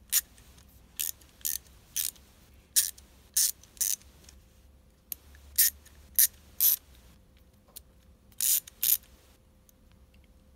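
Small 1/4-inch drive chrome-vanadium ratchet and extension bar being handled and fitted together: about a dozen separate sharp metallic clicks, with two slightly longer clicks near the end.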